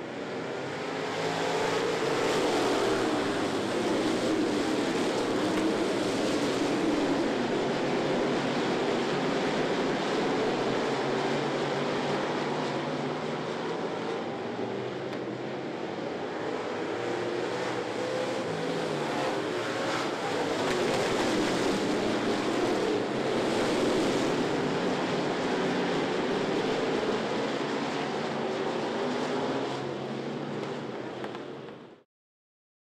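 A pack of street stock race cars running at racing speed, many engines overlapping at once, their pitches rising and falling as they pass.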